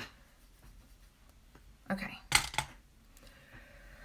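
Makeup items being handled close to the microphone: a few sharp clicks and knocks about two seconds in.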